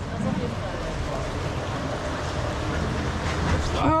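Steady rushing and churning of water in a rapids-ride channel around a round raft boat, with faint voices in the background.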